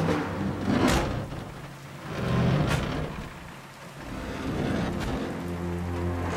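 Dramatic soundtrack music over steady rain, with two sharp crashes about one and three seconds in.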